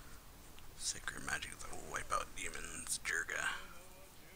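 Anime dialogue in Japanese: a character's voice speaking, starting about a second in and stopping just before the end.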